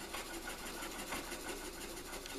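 A thin wooden stick spreading epoxy glue, faint light scraping and dabbing over a steady low hum.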